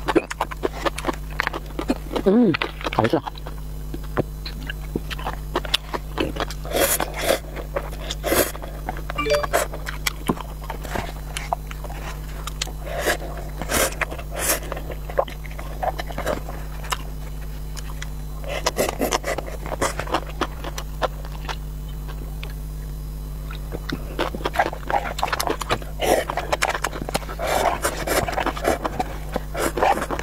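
Close-miked eating sounds: noodles slurped from a paper cup and chewed, with wet mouth clicks and breaths coming in bursts.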